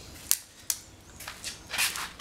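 Two sharp clicks in the first second, then a run of footsteps and clothing rustle as a person walks past close to the microphone.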